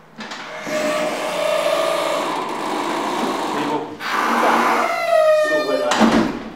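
Loud, continuous speech in Edo: a raised voice talking without pause, with a brief break about four seconds in.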